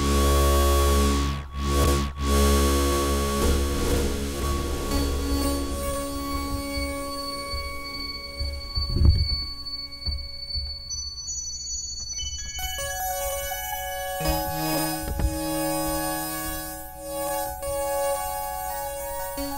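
Waldorf Blofeld synthesizer holding sustained tones with the tone colour sweeping over the first couple of seconds. New notes come in around 13 seconds, and a lower, louder chord about 14 seconds in, with a brief thump near 9 seconds.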